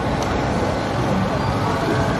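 Steady mechanical running noise from the Slingshot ride's machinery, with indistinct voices in it.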